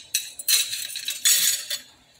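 Aluminium saucepan of spiced tea boiling hard on an electric stove, giving three harsh, high-pitched bursts of hissing, metallic noise about half a second apart.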